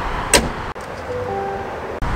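The hood of a 2023 GMC Sierra 1500 pickup being pushed shut: one sharp slam about a third of a second in.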